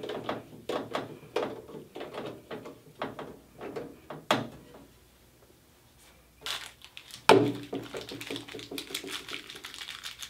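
Hand screwdriver turning screws into a metal drive cage: a run of irregular clicks for about four seconds. After a short pause comes a loud knock, as the screwdriver is set down on the table, and then the clatter of small metal parts being handled.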